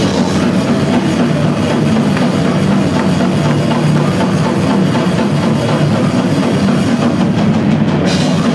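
Death metal band playing live: loud, dense distorted guitars over fast, busy drumming.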